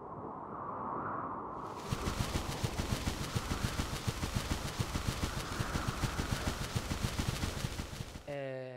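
Intro sound effect: a swelling rush of noise, then from about two seconds in a rapid, rattling run of sharp clicks over it.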